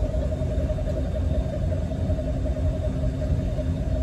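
Boat motor running steadily: a low rumble with a constant hum over it.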